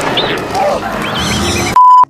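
A film's fight-scene soundtrack, a dense noisy mix with a few short, shrill gliding cries, is cut off near the end by a loud, steady censor bleep.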